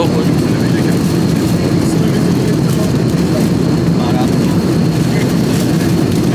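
Steady low drone of an airliner cabin in flight: engine and airflow noise holding an even level.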